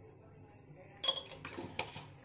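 Metal spoon clinking against a steel kadai and its slotted metal spatula as a spoonful of garam masala is tipped in: one sharp clatter about a second in, then two lighter clinks.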